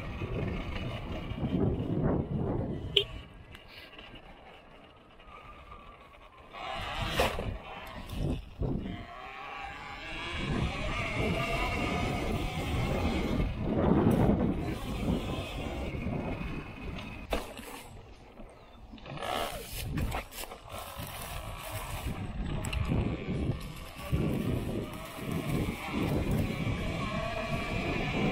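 Talaria Sting electric dirt bike riding a dirt and grass trail, its motor whine rising and falling with the throttle over the rumble of the tyres. The sound drops away while coasting, about four seconds in and again near eighteen seconds.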